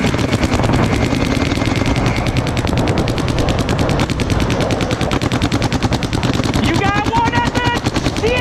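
Paintball markers firing in rapid, continuous strings, more than ten shots a second. Near the end a voice shouts over the firing.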